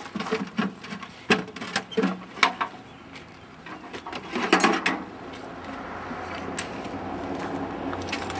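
Metal tools and an air hose clanking and rattling inside a metal toolbox as they are rummaged through and pulled out, in a run of irregular knocks and clinks, the loudest about four and a half seconds in. From about five seconds on, a steady mechanical hum sets in.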